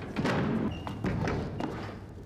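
Several heavy thuds and knocks in quick, uneven succession, over music.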